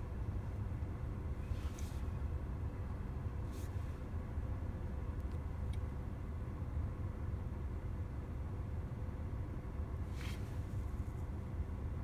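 Steady low rumble inside a parked car's cabin, with a few faint clicks, the clearest about ten seconds in.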